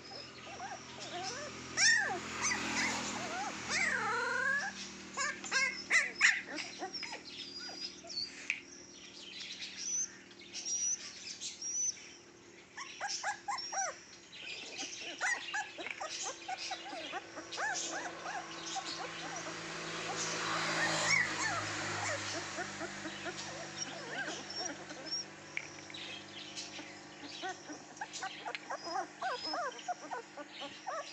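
Young puppies whimpering and yipping: many short, high-pitched squeaks, with a few longer falling whines a few seconds in and another whine about two thirds of the way through.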